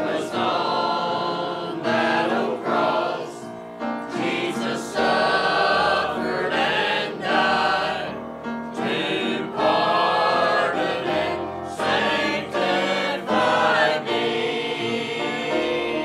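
Mixed church choir of men and women singing a gospel hymn together, in phrases with brief breaths between them.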